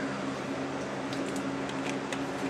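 Box fan running steadily: a constant low hum with an even airy rush, with a few faint clicks over it.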